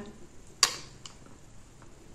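A single sharp click about half a second in, as the lid of a compact eyeshadow palette snaps shut, followed by a couple of faint light ticks.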